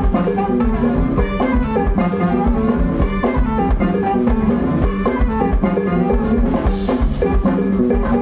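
Live Latin band playing an up-tempo number: congas and stick percussion drive a steady rhythm under electric bass, with saxophone and keyboard on top.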